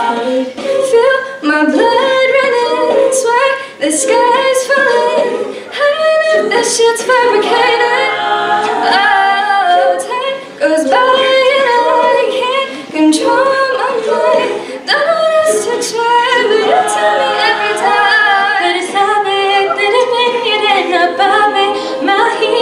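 A cappella group of male and female voices singing together in several parts, with no instruments, continuing with only short breaks.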